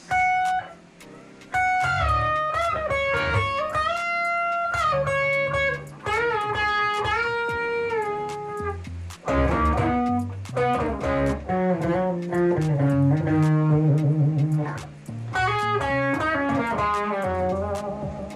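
Tagima TG-530 Strat-style electric guitar played on its bridge pickup: a lead solo of single sustained notes, many bent and slid in pitch, in phrases broken by short pauses.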